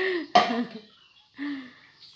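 A person's cough: a sudden loud burst a third of a second in, with brief voiced sounds before and after it and a short hum near the end.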